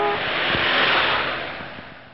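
Whoosh sound effect from a programme's animated transition: a rushing noise that swells to a peak about a second in and then fades away, with a brief tone at the very start.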